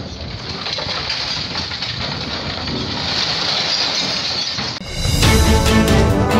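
Steady demolition-site noise from an excavator breaking up buildings and rubble, slowly growing a little louder. About five seconds in it cuts to loud theme music with a beat.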